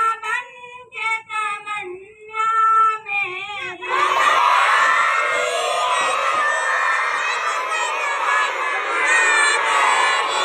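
A single high voice chants short melodic phrases, then from about four seconds in a large group of madrasa children chant together in unison.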